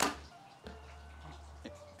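A compound bow shot: one sharp crack of the string and limbs at release right at the start, dying away within a fraction of a second. Soft background music follows.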